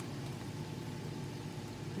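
A steady low hum of background noise, with no distinct events.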